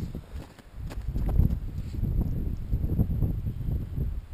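Wind buffeting and handling noise on the camera's microphone: an uneven low rumble with soft, irregular thumps.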